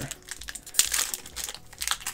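Wrapper of a 1995-96 Fleer basketball card pack crinkling and crackling irregularly as it is handled in the hands.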